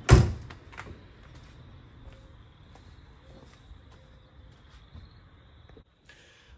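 A single loud thump right at the start, followed by a few faint scattered clicks and a faint steady high-pitched whine until a sudden cut near the end.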